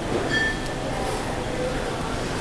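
Steady background noise with low rumble, with faint distant voices now and then.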